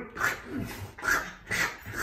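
A little pet dog making a run of short sounds, about four in two seconds.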